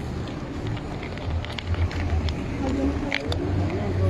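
A motor vehicle's engine running close by, a steady low rumble in street noise, with faint voices in the background.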